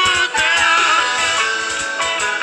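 Band music from electric guitars and keyboard, with a voice singing over it, playing steadily.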